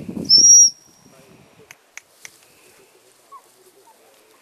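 A single short, loud blast on a gundog whistle near the start: one high, steady tone lasting about half a second. A few faint clicks follow about two seconds in.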